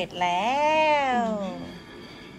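One long drawn-out vocal sound that rises in pitch and then falls, lasting about a second and a half.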